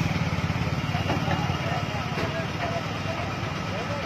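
A vehicle's engine idling with a steady, fast low pulse, with the voices of a crowd over it from about a second in.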